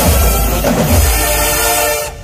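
Loud dance music with heavy bass thumps under held, horn-like chords. It cuts off abruptly at the end.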